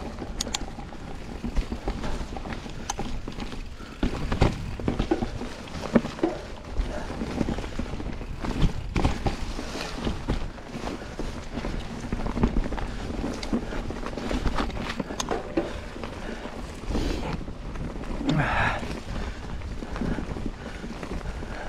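Enduro mountain bike ridden fast over a rough forest dirt trail: tyre and trail rumble with frequent knocks and rattles from the bike over bumps, and wind on the microphone. A short higher-pitched sound comes in near the end.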